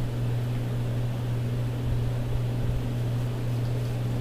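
A steady low hum with a faint even hiss above it, unchanging throughout.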